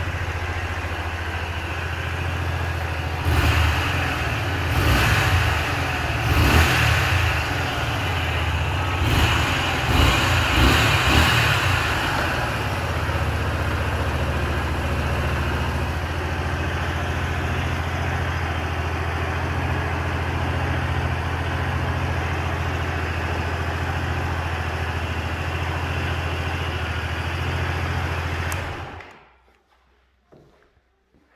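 2005 Honda VT125 Shadow's 125 cc V-twin idling, with several short revs in the first dozen seconds. It then idles steadily until it is switched off near the end.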